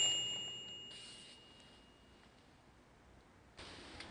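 A high, clear metallic ring fading away over about two seconds, the tail of a sharp strike that lands just before. A low, even hiss of room ambience comes up near the end.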